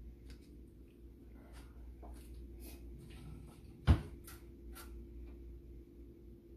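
Light clicks and rustles of kitchen handling over a steady low hum, with one sharp knock about four seconds in.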